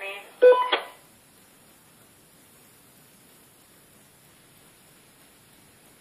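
A brief electronic burst under a second long at the start, voice-like with steady beep-like tones in it, from an electronic device; then only a quiet, steady hiss.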